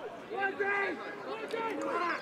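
A voice talking quietly, softer than the loud commentary around it.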